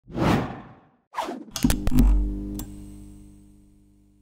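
Animated logo intro sting: two quick whooshes, then a cluster of sharp hits with a deep boom about a second and a half in. A low chord keeps ringing after the hits and fades away.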